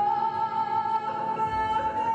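Opera music: one long, high note is held over instrumental accompaniment, stepping slightly higher near the end.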